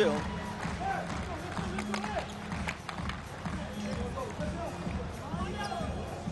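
Indoor volleyball arena ambience between rallies: crowd murmur and faint distant voices over low, pulsing arena music, with a few sharp knocks from the court.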